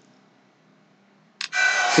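Near silence for over a second, then a short click and a man's voice starting to speak near the end.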